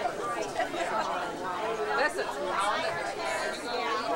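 Indistinct overlapping chatter from several people talking at once in a crowd.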